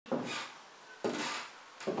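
High-heeled shoes stepping on a wooden floor in a small room: three steps a little under a second apart, each a sharp knock that fades briefly in the room.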